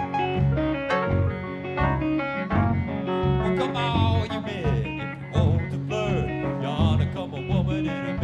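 Live blues-rock band playing an instrumental passage: electric guitars over a steady drumbeat. From about halfway through, the lead guitar plays bending, wavering notes.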